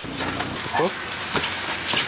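Clear plastic wrap and a fabric wheel bag rustling and crinkling as a new alloy wheel is unwrapped in its cardboard box, with a couple of short vocal noises.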